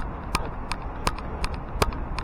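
A regular ticking, about three clicks a second, over a low rumble of road and wind noise.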